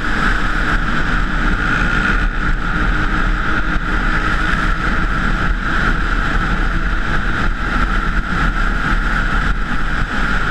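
Honda dirt bike running steadily at road speed, heard from a helmet-mounted camera with wind rushing over the microphone. The sound is an even roar with no sudden changes.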